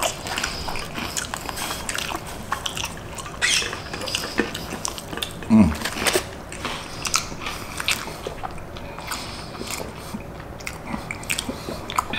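Close-miked chewing and lip smacking of loaded carne asada fries, a steady run of short wet clicks and smacks, with a brief low falling hum about halfway through.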